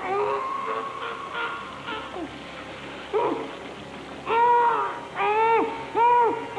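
A man's strained, high-pitched cries of pain, a string of wailing cries that rise and fall, longer and louder in the second half. His feet are being held in scalding water.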